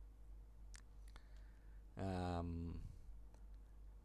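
Faint low hum with a few light clicks in the first half, then a man's drawn-out "uh", held for almost a second at about the halfway point.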